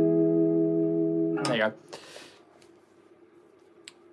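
Electric guitar through an amp, an F major chord ringing out with a brief pitch dip from the tremolo arm, then muted about a second and a half in. Afterwards only low amp hum and a small click near the end.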